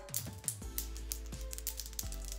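Long fingernails clacking against each other in quick, irregular taps, over background music.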